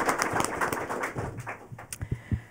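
Audience applause dying away, the claps thinning out and stopping about a second and a half in.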